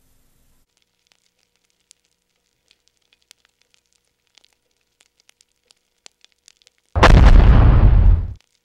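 Intro sound effect of sparks and an explosion: faint scattered crackles, then a sudden loud explosion about seven seconds in that dies away over a bit more than a second.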